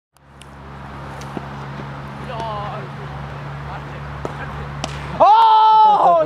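Open-air ambience with a steady low hum and a few sharp clicks. About five seconds in, a man gives a loud shout, holding one pitch for most of a second.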